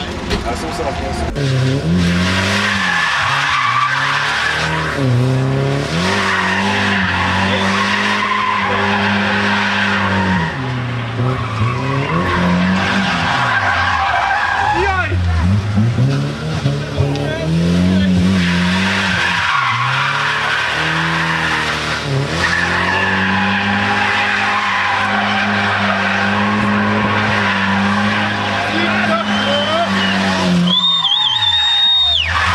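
A car engine being driven hard through a slalom run, held at high revs for a few seconds at a time, with the revs dropping and climbing back up about six times, and tyres squealing.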